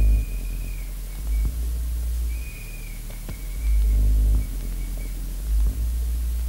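Vinyl records mixed live on DJ turntables: long deep bass notes in blocks with a thin high tone that comes and goes and dips in pitch as it breaks off, and no drum beat.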